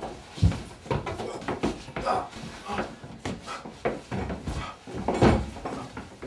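Irregular knocks and thuds on wood, a dozen or so scattered unevenly, the loudest about five seconds in, as in a scuffle in a wooden room.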